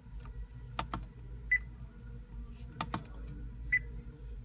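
Two short, high confirmation beeps from an Acura's infotainment system, about two seconds apart, as a setting is changed. Between and before them come a few sharp clicks of the console controls being pressed.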